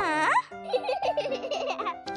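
A cartoon child character giggling over light children's background music, opening with a quick falling pitch glide.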